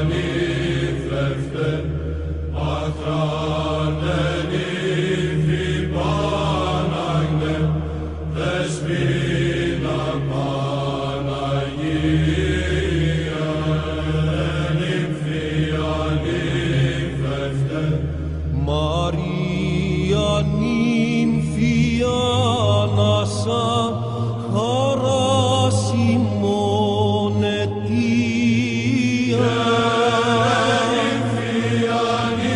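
Byzantine-style Orthodox chant: an ornamented sung melody over a held low drone. The drone steps up to a higher note about two-thirds of the way through.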